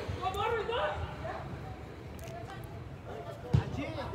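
Voices calling out during play, then a single sharp thump about three and a half seconds in: a football being kicked.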